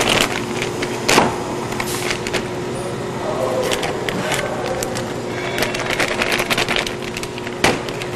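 Steady hum of packaging-line machinery with a constant tone. Over it come crinkles and sharp taps of filled foil stand-up pouches being picked up and set down on a plastic sheet, the sharpest about a second in and near the end.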